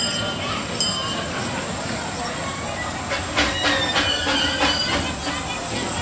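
A 5/12-scale live steam locomotive and its riding cars rolling slowly through a station, with two sharp metallic clinks in the first second. From about halfway in there is wheel clatter and thin, high squeals from the wheels on the rails. Crowd chatter runs underneath.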